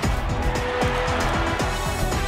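News headline theme music with a driving beat, laced with repeated short falling swoosh effects and sharp hits.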